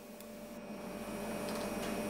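Steady hum and hiss of machinery in a small room, with a faint steady tone, growing gradually louder; no distinct handling sounds stand out.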